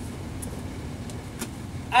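Low, steady room noise with a few faint light clicks spread through it.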